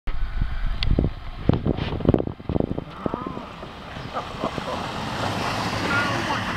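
Wind buffeting the microphone in low thumps, then the hard plastic wheels of Little Tikes Cozy Coupe ride-on toy cars rolling over artificial grass as they are pushed, the rolling noise growing louder as the cars come close.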